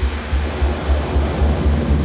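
Deep, steady jet engine roar of a Saab Gripen E fighter's F414 turbofan as the aircraft flies past low, under background music.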